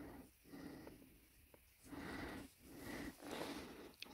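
Faint breathing close to the microphone: a series of soft puffs, about one every three quarters of a second.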